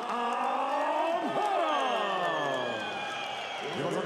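Ring announcer drawing out a fighter's name in one long call, its pitch sliding slowly down over about three and a half seconds, with crowd noise beneath.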